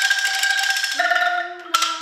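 Bamboo angklung being shaken, their tubes rattling fast to sustain one held note, then a second, slightly lower note about a second in.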